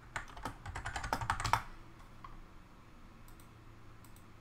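Typing on a computer keyboard: a quick run of key clicks for about the first second and a half, then the typing stops, leaving a faint low hum.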